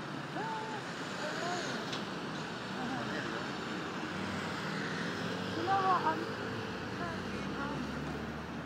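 City street ambience: traffic running steadily, with indistinct voices of people nearby that are loudest about six seconds in.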